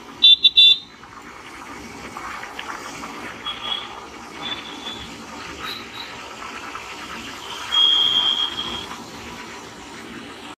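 Vehicle horns honking in dense city traffic over the steady engine and road noise of a motor scooter being ridden. Three short, very loud toots come right at the start, a couple of shorter horn notes follow a few seconds in, and a longer, loud horn blast sounds about eight seconds in.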